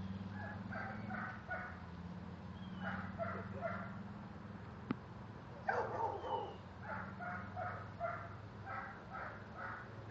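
A dog barking in quick runs of three or four barks, about three a second, with a louder, rougher outburst about six seconds in.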